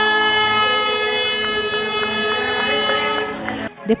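A horn sounding one steady, unwavering blast of about three seconds, signalling the start of a running race.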